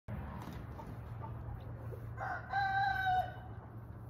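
A rooster crowing once, a single held crow of about a second starting a little past two seconds in, over a steady low rumble.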